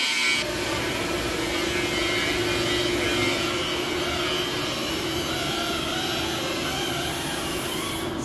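Steady workshop machinery noise with a constant low hum, starting just after the start and running unchanged.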